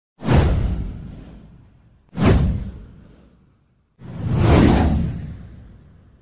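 Three whoosh transition sound effects of a title intro, at about two-second intervals. Each starts suddenly and fades away over about a second and a half; the third swells in more slowly and lasts longer.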